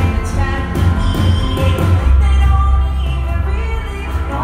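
A live rock band playing, with acoustic guitar, electric guitar and drums, heard from the audience with a heavy, booming low end.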